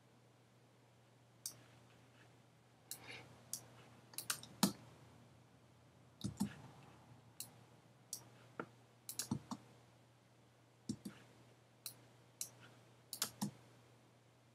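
Faint, irregular clicks from a computer mouse and keyboard, some coming in quick pairs or small clusters.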